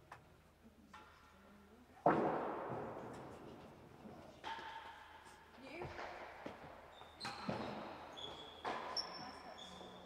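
Real tennis rally in a large, echoing court: a hard ball strike about two seconds in, then further ball hits on rackets, walls and floor about every second and a half, each ringing out in the hall. A few short high squeaks come between the hits.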